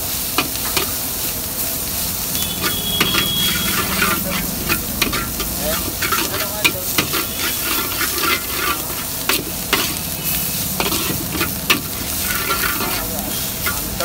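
Shredded cabbage, onion and peppers sizzling in a large metal wok as a metal spatula stirs and scrapes through them, with frequent sharp clacks of the spatula against the pan.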